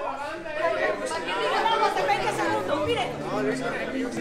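Several people talking over one another, lively overlapping chatter. From about two and a half seconds in, a band's low bass notes start underneath.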